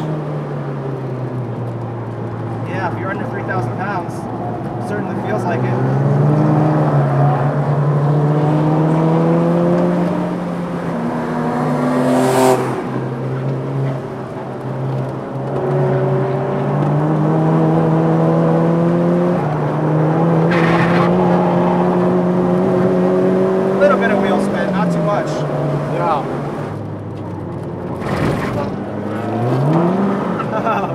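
Turbocharged 2.0-litre four-cylinder engine of a tuned 2007 VW Mk5 GTI, heard from inside the cabin under hard acceleration. Its pitch climbs steadily through each gear and drops at the shifts, with a sharp dip and quick rise near the end.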